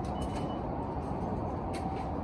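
Steady low rumble of a large station concourse. A brief high beep comes just after the start as a passenger goes through an automatic ticket gate, and a few faint clicks follow, the clearest near the end.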